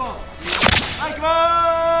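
An editing whoosh sound effect, a sharp swish about half a second in, followed by a steady held note of about a second that carries on past the end.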